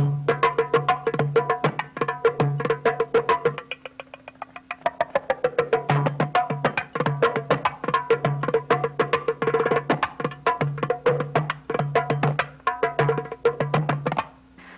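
Darbuka, a clay goblet drum with a goat-skin head, played by hand in a fast rhythm. Deep low strokes alternate with rapid sharp high strokes and quick rolls, thinning out briefly about four seconds in and densest near ten seconds.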